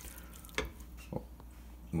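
Ground chuck beef browning in a stainless steel pot, sizzling faintly, while a wooden spoon stirs and scrapes through it with a few light knocks about half a second and a second in.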